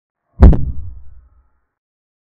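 A single deep thud about half a second in, fading out over about a second: a chess move sound effect marking a bishop move on the digital board.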